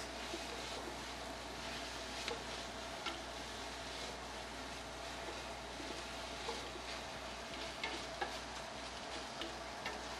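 Faint steady sizzle of diced hot dogs sauteing in a stainless steel stockpot, with a few light clicks and scrapes of a spoon stirring against the pot.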